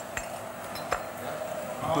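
A couple of light clinks of dishes and cutlery over a steady low hum.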